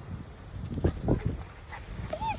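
A small terrier gives two or three short, quick yips or huffs about a second in, bounding through deep snow.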